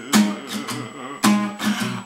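Acoustic guitar strummed, with two loud strums about a second apart and the chord ringing between them.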